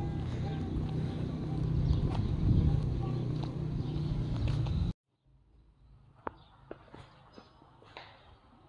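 Footsteps on a stone pavement over a steady low outdoor rumble, which cuts off abruptly about five seconds in. After the cut there is a quiet church interior with a few faint footsteps.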